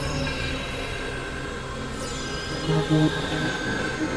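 Experimental electronic synthesizer music: dense layers of sustained tones and drones, with a falling sweep about halfway through and a few short low notes soon after.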